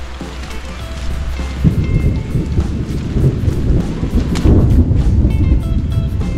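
Heavy rain, with a loud, rumbling low noise that sets in about a second and a half in, under background music.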